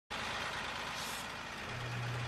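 Steady running noise of an M35A3 cargo truck's Caterpillar 3116 diesel engine, with a low steady hum coming in near the end.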